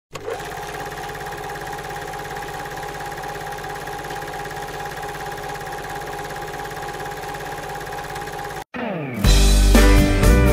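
Steady electronic buzzing drone under the channel's intro logo, holding one pitch for about eight and a half seconds before cutting off suddenly. Near the end a short falling sweep leads into loud music.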